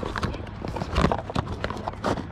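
Cardboard router box handled in the hands: a run of uneven knocks, taps and rustles as it is turned over and its flap opened, loudest about a second in.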